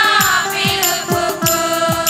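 A group of women singing a devotional hymn together, with a steady drum beat of low falling notes and regular high percussion strokes underneath.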